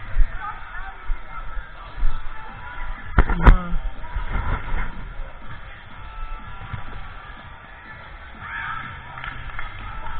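Indoor volleyball play in a gymnasium: two sharp slaps of the ball, about a third of a second apart, come about three seconds in and ring briefly in the hall. Background music and players' voices run underneath.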